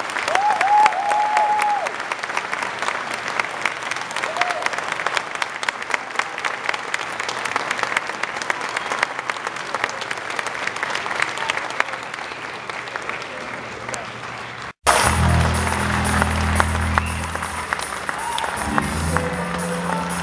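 An audience applauding, a dense patter of clapping with a few whoops near the start, easing off slightly over time. About 15 seconds in, the applause cuts off abruptly and music with a steady low bass line takes over.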